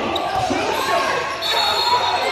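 A basketball being dribbled on an indoor gym court, with voices carrying in the hall and a high-pitched squeak near the end.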